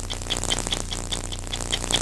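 Mechanical stopwatch ticking steadily, about five ticks a second, over a steady low hum: the newsmagazine's signature stopwatch tick marking a segment break.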